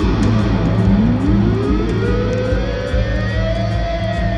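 Live electric guitar holding a note whose pitch dips, then glides slowly up and back down over a few seconds, above a steady low drone.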